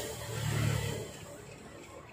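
A low rumble that swells about half a second in and then fades away, leaving a faint hiss.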